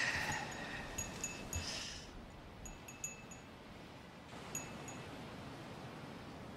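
Wind chime ringing in a few light, scattered tinkles over a faint steady background hiss.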